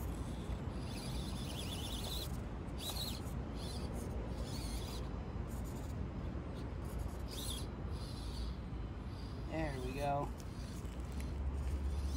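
Axial SCX24 micro rock crawler's small electric motor and gears whining in short bursts of throttle as it climbs over rocks and dirt, over a steady low rumble.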